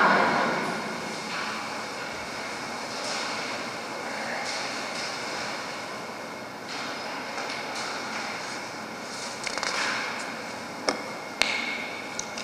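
Steady, wordless noise of a full, echoing church as people sit and settle between prayers, after a spoken 'Amen' fades at the very start. Two sharp clicks sound close together near the end.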